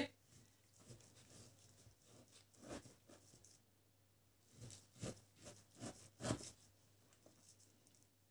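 Faint knife cuts through slabs of pork fatback on a wooden cutting board: a few soft strokes and taps, mostly in the second half, with near silence between.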